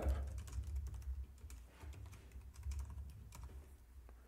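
Typing on a computer keyboard: a quick, irregular run of key clicks as a line of code is entered, over a steady low hum.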